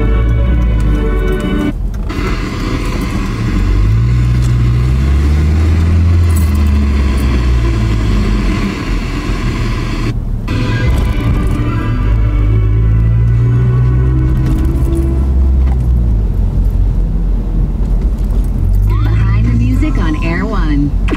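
Car radio scanning through stations, music playing over the car's speakers and breaking off in two short drop-outs, about two seconds in and again about ten seconds in, as the tuner moves on. Under it is the low rumble of the car driving.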